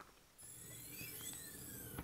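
Faint metallic rolling of a steel ball-bearing drawer slide being moved as the panel bracket is raised. It starts about half a second in, with thin high whining tones that rise and fall.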